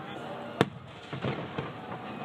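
Aerial firework shells bursting overhead: one sharp bang about half a second in, followed by a few softer booms.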